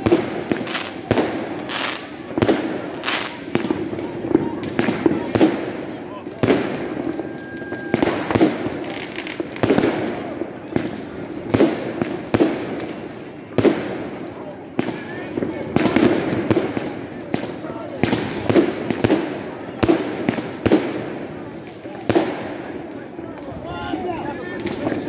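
Fireworks going off in a dense, irregular run of bangs, several a second, with no let-up.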